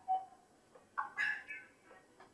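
A whiteboard marker squeaks briefly on the board about a second in.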